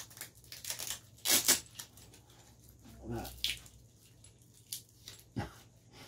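Velcro strap being pulled open and fastened around a coiled coaxial patch lead: a few short rasping rips, the loudest about a second and a half in, with cable-handling rustles between.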